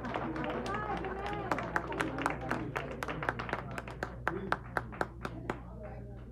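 A small audience clapping, the separate claps standing out clearly, with people's voices under it; the clapping thins out and stops near the end.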